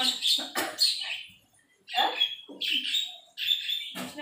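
Birds chirping in short high calls, coming in several bursts, with a brief quiet gap between them.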